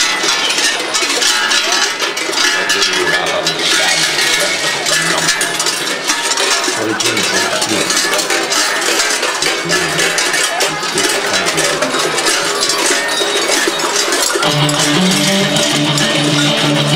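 Large bells worn by Krampus figures clanging continuously as the costumed runners move, over background music. The music gets much louder about a second and a half before the end.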